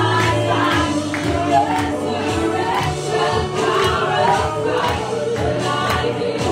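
Live gospel worship music: a church worship band plays with a steady drum beat while the worship team and congregation sing together.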